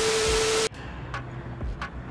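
A TV-static glitch transition sound effect: a loud burst of hiss with a steady beep under it, cutting off suddenly about two thirds of a second in. A quieter background follows, with faint regular ticks about every half second.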